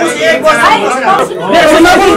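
Several people talking loudly over one another, a heated babble of voices in a crowded room.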